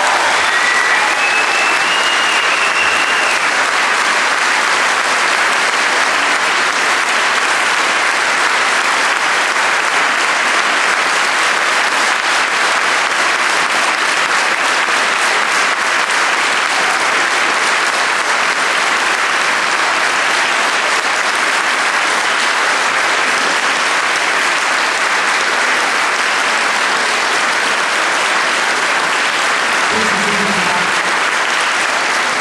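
Audience applauding steadily: a sustained wash of many hands clapping at an even level throughout.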